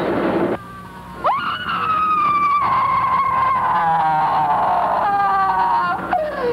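A woman screaming: a short noisy burst at the start, then a high scream that sweeps up about a second in and is held for several seconds, sinking slightly in pitch, with a second held scream near the end.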